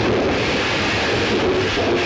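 Thunderstorm sound effects on an early 1930s film soundtrack: a steady rush of wind and rain under a low electrical hum from the laboratory's apparatus.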